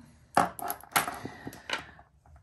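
Several sharp clicks and taps from handling a strand of jade beads on steel memory wire and metal jewelry pliers, the loudest about a third of a second in and another about a second in, with smaller ones after.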